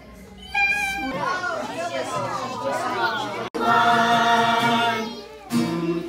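A group of children's voices singing and calling out together, then cut off abruptly about halfway, followed by a stretch of held, sung notes.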